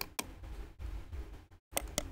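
Computer mouse clicking: two quick pairs of sharp clicks, one at the start and one near the end, when a right-click menu opens. Between them is a low rumble of room noise from the microphone that cuts in and out.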